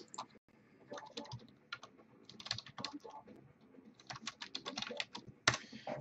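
Computer keyboard typing a short line of text, the keystrokes coming in a few quick runs with pauses between them.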